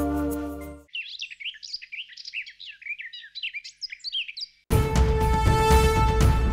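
Birds chirping in quick, high, overlapping calls for a few seconds, starting and stopping abruptly. Before them a held music chord ends within the first second, and loud music starts again near the end.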